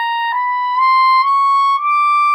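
Clarinet playing in its high register: a held high note that steps up four times into a slow rising line, each note about half a second long, the last one held. It is played with a steady air stream for a clear, unforced upper-register tone rather than a harsh one.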